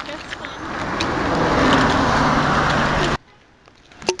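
A motor vehicle's engine and tyres passing close by, swelling over about a second to a loud, steady rush, then cutting off suddenly.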